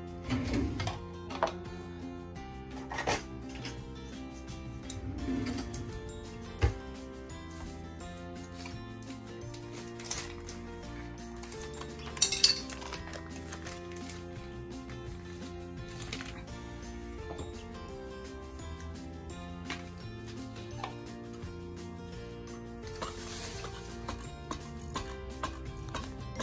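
Background music, with scattered clinks and knocks from a wire whisk against a mixing bowl of egg and butter.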